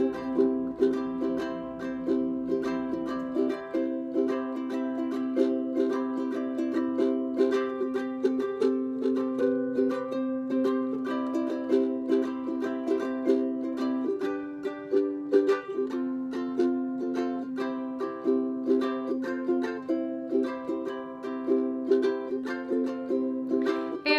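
Ukulele strummed in a steady rhythm, an instrumental break of repeating chords with a few chord changes and no singing.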